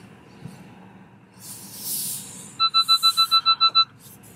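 A short hiss, then a rapid run of about ten high electronic beeps in just over a second, the loudest sound here.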